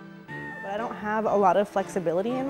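A woman speaking in English over soft background music.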